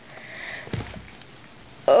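A short breathy sniff, then a soft bump about three quarters of a second in.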